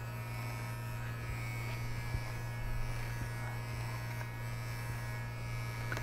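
Wahl Figura Pro lithium-ion cordless horse clipper running with a steady low hum as it trims a horse's muzzle whiskers, its 5-in-1 blade set to the closest setting, 40.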